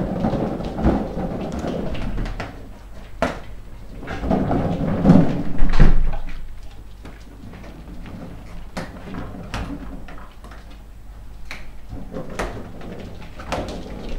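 Puppies playing with air-filled balloons on a hard floor: balloons bumping and rubbing, with scattered sharp taps. Loudest about five to six seconds in.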